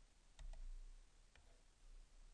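Faint clicks from working a computer over near silence: a quick double click about half a second in and a single click near the middle.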